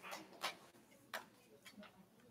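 The last few scattered hand claps of an audience's applause, faint and dying away within the first second or so.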